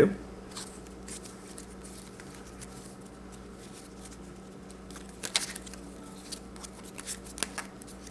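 Theory11 Union playing cards handled in cardistry packet cuts: soft, short snaps and clicks as card packets strike and slide against one another, one early and a cluster in the second half, over a steady low hum.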